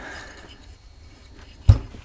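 A Garrett GT1752 turbocharger cartridge being handled and then set down on a cloth rag: faint handling rustle, then one dull, heavy thump near the end as it lands.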